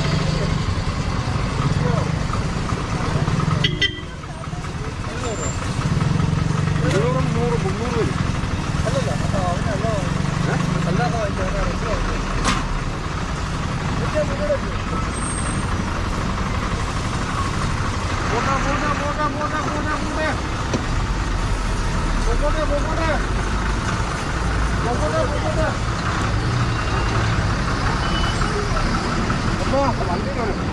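Road traffic running by with a steady engine rumble, a heavy truck with an excavator on its trailer rumbling close in the last few seconds, and people talking over it.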